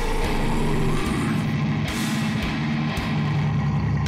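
Slam death metal music: a low, distorted guitar riff over drums, the riff's notes changing about every half second.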